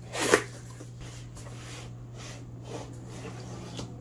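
Cardboard shipping box being opened by hand: a short, loud scrape as the flap comes open just after the start, then soft cardboard rustling and sliding as the boxed kits are drawn out.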